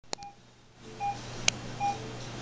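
Bedside patient monitor giving its pulse beep: a short mid-pitched beep about every 0.8 seconds, with a fainter lower tone between. Two sharp clicks, one near the start and a louder one about three-quarters of a second later.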